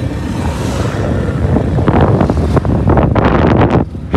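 Wind buffeting the phone's microphone from a moving vehicle, over a loud, steady rumble of road and engine noise; the gusts come thicker and harder from about two seconds in, and ease briefly just before the end.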